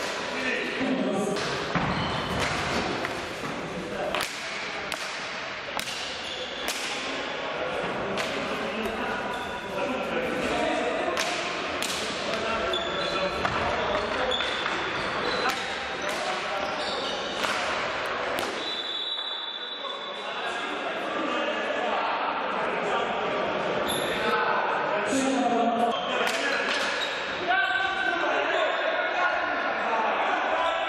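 Indoor field hockey play in a sports hall: sharp, irregular knocks of sticks striking the hard ball, each echoing in the hall, with voices calling out.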